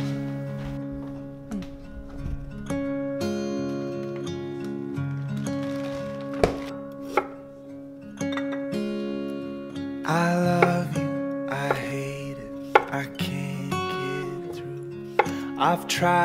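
Gentle acoustic guitar music plays throughout. Over it, a kitchen knife makes a handful of sharp, separate knocks on a wooden cutting board as ginger is sliced.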